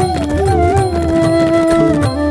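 Instrumental music: a flute holding long, gently gliding notes over tabla strokes and a low bass.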